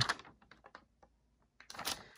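Paper notebook being handled: a few small soft clicks and taps in the first second, then a short rustle of paper near the end.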